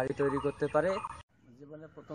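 A man speaking; the voice cuts off abruptly a little over a second in, and a fainter voice follows.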